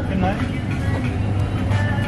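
Shop background: a steady low rumble with faint voices and some music behind it.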